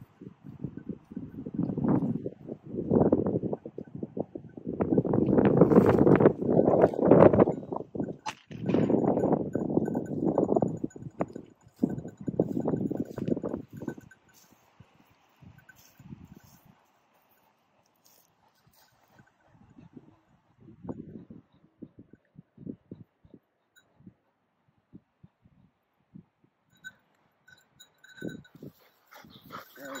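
Dog sounds from a German shorthaired pointer: loud, uneven bursts through the first half, then quieter with scattered short clicks.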